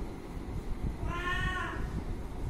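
A cat meows once, a short call about a second in that rises slightly and then falls in pitch.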